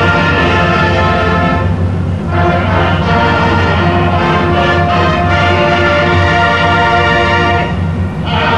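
Marching band of brass and drums playing long held chords, with a short break between phrases about two seconds in.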